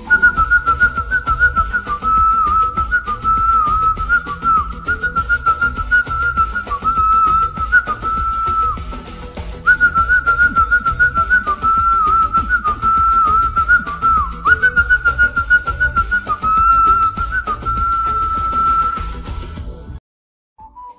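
Human whistling carrying the melody of a film song over its instrumental backing track with a steady beat. The whistled line moves in short phrases with little slides and dips, and ends on one long held note near the end.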